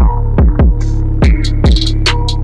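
Background electronic music: a deep, sustained bass comes in suddenly at the start, with four or so kick drum hits whose pitch drops.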